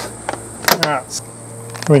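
Two light clicks a little under a second in, from a steel ruler being handled on a plywood board, over a steady background hum; a spoken word begins at the very end.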